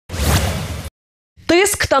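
A short whoosh sound effect on a TV channel's animated logo ident, lasting under a second, followed by a brief silence before a woman starts speaking near the end.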